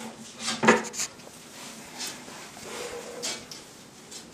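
Handling noise of a glass sheet and a wooden silkscreen frame being moved and set down: a few light knocks and clinks, the sharpest about two-thirds of a second in.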